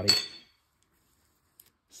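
A single light metallic clink with a brief high ring that dies away within about half a second, from a small metal part being handled during throttle body disassembly. A couple of faint clicks follow about a second and a half in.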